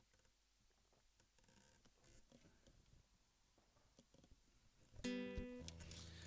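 Near silence with a few faint knocks, then about five seconds in a nylon-string acoustic guitar is sounded once and rings on.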